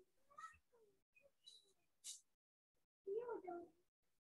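Mostly near silence, with a few faint small sounds early on and one short vocal sound about three seconds in, about half a second long, that rises then falls in pitch.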